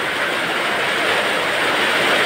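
Heavy typhoon rain pouring down in a steady, dense hiss.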